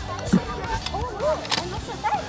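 Background music with a man's short vocal sounds rising and falling in pitch, and a couple of sharp clicks about one and a half seconds in.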